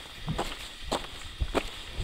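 A hiker's footsteps in shallow snow over leaf litter, three steps at an even walking pace, about one every 0.6 seconds.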